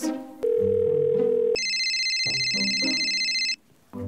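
Mobile phone call: a steady single ringback tone for about a second, then a high electronic phone ring for about two seconds that cuts off suddenly as the call is answered. Low background music plays underneath.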